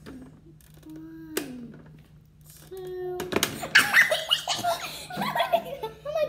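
A sharp click about a second and a half in, then children burst into loud laughter and giggling from about three seconds in.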